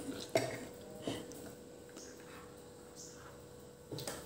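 A few faint clicks of a metal spoon against a plastic plate as a child eats rice, over a faint steady hum in a quiet room.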